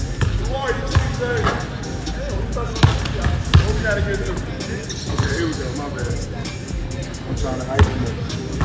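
Basketballs bouncing on a hardwood gym floor: a handful of sharp thuds, the two loudest a little before and after three seconds in, over music and voices.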